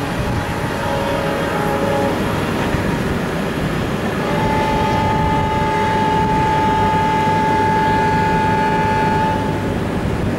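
Diesel locomotive horn on an Indian Railways line: a short blast about a second in, then one long steady blast of about five seconds starting about four seconds in, over the steady low rumble of diesel trains.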